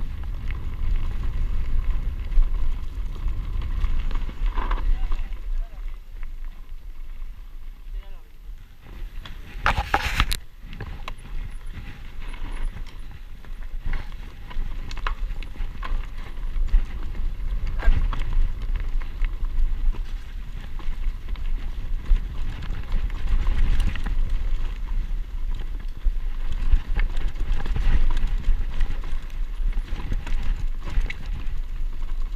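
Mountain bike riding down a dirt forest singletrack: a steady low rumble of wind on the camera microphone and tyres on the trail, with frequent clicks and rattles from the bike and a loud clatter about ten seconds in.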